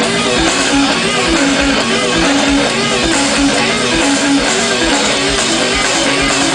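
Live rock band playing: electric guitars with a repeating riff over drums, a full, steady wall of music with no singing.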